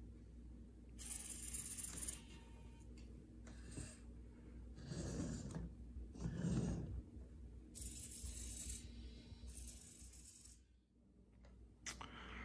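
Hobby servo motors in a 3D-printed robot arm whirring faintly in short bursts of one to two seconds as its joints are driven one after another.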